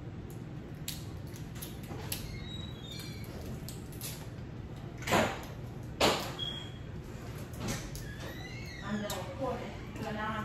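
Crab legs being cracked and picked apart by hand, with small scattered clicks and snaps and two louder cracks about five and six seconds in.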